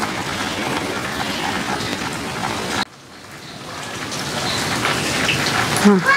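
Steady rain falling. The sound drops away suddenly about halfway through and swells back up over the next couple of seconds.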